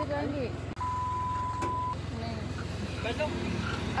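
Auto-rickshaw engine idling with a steady, rapid low chug, under voices. About a second in, a steady electronic censor bleep lasting about a second covers the spoken place name.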